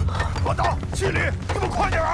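Steady low rumble with clattering debris and a sharp crash about a second in: sound effects of a stone temple collapsing.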